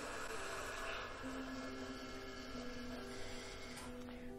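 Faint, soft background music of slow held notes that shift in pitch every second or two, over a light room hum.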